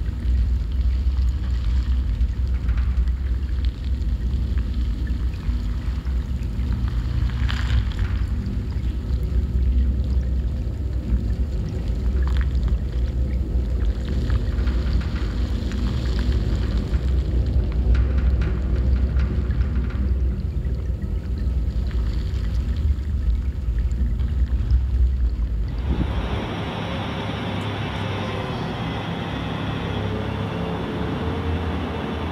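Recorded iceberg sounds played over loudspeakers: a deep, steady rumble with a hiss above it and scattered sharp cracks and pops. About four seconds before the end the rumble drops away and a thinner, steadier hiss takes over, with a faint rising tone.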